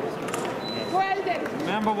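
A man speaking over the steady background noise of a busy hall.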